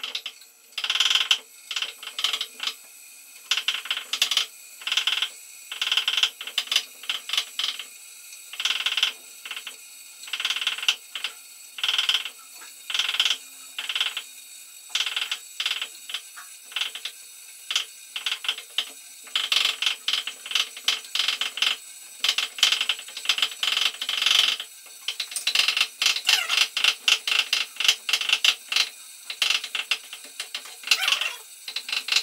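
Kitchen knife chopping on a wooden cutting board: runs of quick taps with short pauses between, coming faster and denser in the second half.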